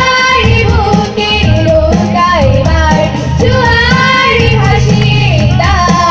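Children's choir singing a song together through microphones.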